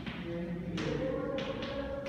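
Chalk writing on a blackboard: a few short scratchy strokes and taps, about three in the second half.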